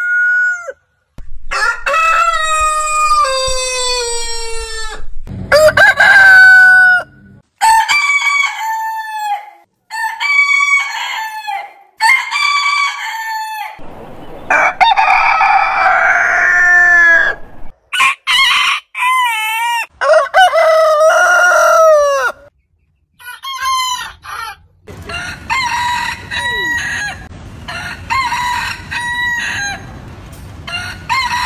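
Roosters of different breeds crowing one after another, about ten crows in all, each a multi-syllable cock-a-doodle-doo, with abrupt cuts between birds.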